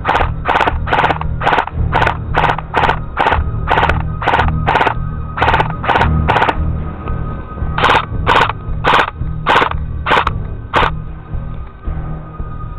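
Airsoft electric rifle firing single shots, about two a second, about twenty in all, with a short pause just past the middle. Background music plays underneath.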